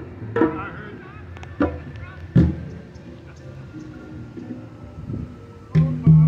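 Hand drums of a drum circle (djembes and a conga) struck a few times. There are three louder single strikes, the strongest and deepest about two and a half seconds in, over faint music and voices.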